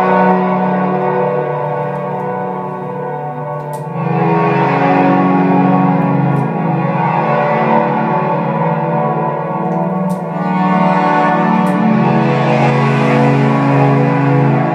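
Ambient synthesizer chords in Ableton, played live from a homemade Arduino MIDI glove controller with effects applied. The sustained tones grow denser and noisier about four seconds in, and the texture shifts again a little after ten seconds.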